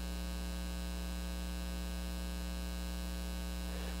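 Steady electrical mains hum with a ladder of overtones, unchanging in level.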